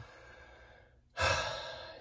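A man's audible sigh: a breathy exhale that starts about a second in, after a brief hush, and fades away.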